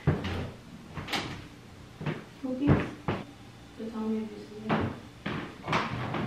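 Bathroom door being opened: the handle and latch click, mixed with several separate sharp knocks.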